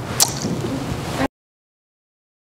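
Steady low room noise with one brief sharp click about a quarter second in, then the sound cuts off abruptly to dead silence a little after a second in.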